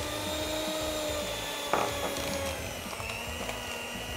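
Electric hand mixer running with its beaters in a very stiff, crumbly butter-flour cookie dough, a steady motor whine that sags slightly in pitch as it works, with a brief knock of the beaters against the bowl partway through.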